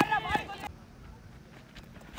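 A man's voice calling out 'run', then a lull of faint outdoor background with a low rumble.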